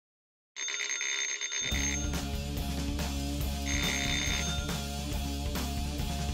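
A telephone bell ringing, joined about a second and a half in by rock music with guitar, heavy bass and a steady drum beat; the phone rings again near the middle, over the music.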